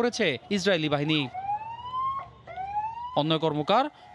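An ambulance siren wailing in two rising sweeps of about a second each, with voices before and after.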